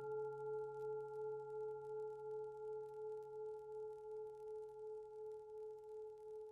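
A singing bowl rings on one sustained tone that fades slowly and wavers in loudness about twice a second.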